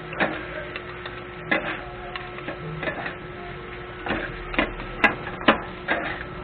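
Two metal spatulas clanking and scraping against a flat iron griddle as chopped pork sisig and onions are tossed and chopped, in irregular sharp strikes, the two loudest about five seconds in.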